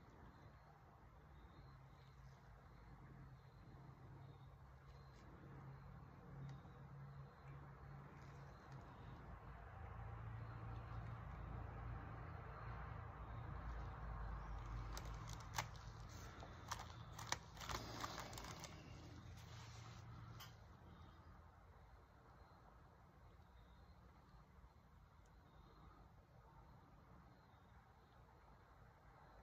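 Near silence with a faint low hum, and a short run of light clicks and taps about halfway through as a silicone dice mold is handled and set down on the work table.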